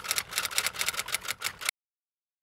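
Typewriter typing sound effect, a fast run of key clacks at about eight a second that cuts off suddenly near the end.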